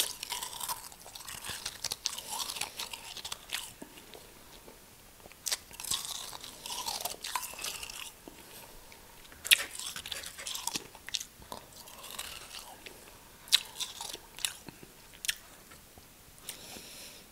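Close-up chewing of powdery real snow: soft crunches and crackles come in bouts, with a few sharp snaps, the sharpest right at the start.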